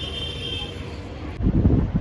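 Steady low outdoor background hum. From about one and a half seconds in, wind buffets the microphone with a sudden louder rumble.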